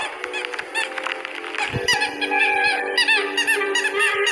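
Orchestral film score with a low thud about halfway in, followed by a run of short, high squeaky honks: a frightened cartoon shoe squeaking and honking.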